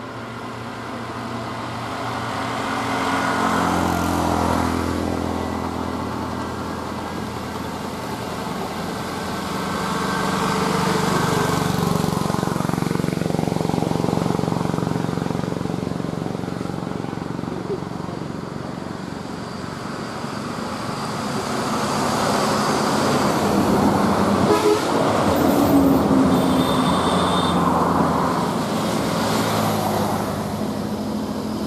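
Highway traffic: buses and three-wheeled auto-rickshaws driving past one after another, the engine sound swelling and fading in three waves, with horn toots. The loudest pass comes near the end.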